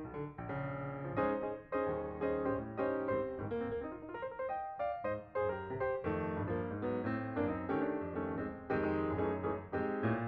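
Background piano music, a melody of separate notes played one after another.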